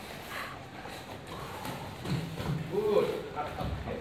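Faint footsteps and light taps on a training mat, with a man's low, untranscribed voice about halfway in.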